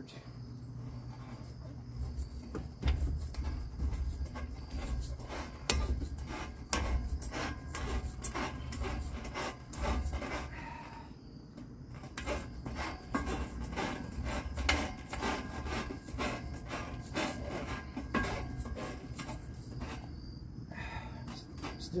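Hands gripping and shifting along the metal rungs of playground monkey bars during hand-over-hand hanging moves: an irregular run of sharp clicks and knocks with rubbing and low thuds, easing off briefly about halfway through.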